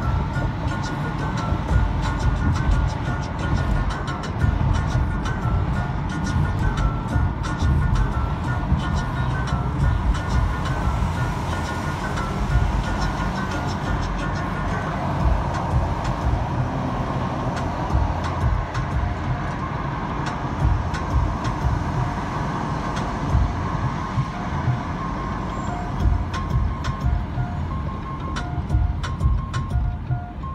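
Steady road and engine rumble heard inside a moving car's cabin, with music playing in the car over it as short repeating melodic notes.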